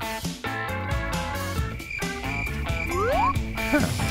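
Cartoon-style snoring sound effect over light background music, with a rising pitch glide about three seconds in.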